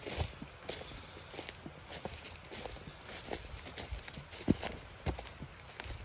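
Footsteps crunching irregularly over dry pine-needle and leaf litter on a forest floor, with one sharper crunch about four and a half seconds in.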